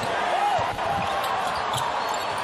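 A basketball being dribbled on a hardwood court, several bounces, over the steady murmur of an arena crowd.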